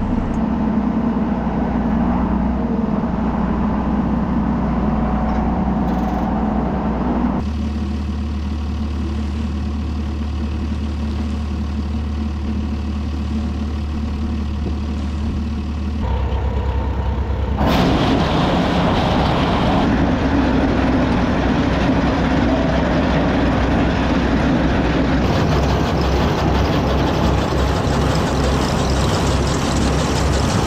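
Farm tractor engines running steadily around the silage pile, with an old Farmall tractor running the conveyor that carries chopped corn silage up onto the pile. The sound shifts abruptly at cuts about 7, 16 and 18 seconds in, and is loudest and noisiest after the last of these.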